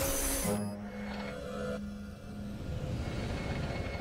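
Cartoon background music with a whoosh at the start, the sound effect of Luna Girl's moon-shaped Luna Magnet flying off, fading away afterwards.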